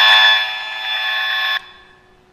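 The speaker of a handheld high-frequency radiation meter giving out a loud, steady buzz: the pulsed signal of a mobile-phone transmitter on a nearby building made audible, with the reading in the red range. It cuts off suddenly about one and a half seconds in.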